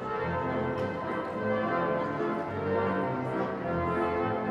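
The Wanamaker pipe organ playing a full passage of held chords, with bell-like tones.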